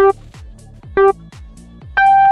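Race-start countdown beeps: one short beep right at the start and an identical one about a second later, with the longer, higher-pitched 'go' tone starting at the very end. Electronic music with a steady beat plays underneath.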